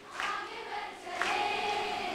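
A large group of girls and women singing a Hindi song together, fairly quiet, holding long notes.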